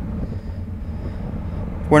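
Steady low wind rumble and road noise on a bike-mounted action camera riding at speed in a pack of racing bicycles.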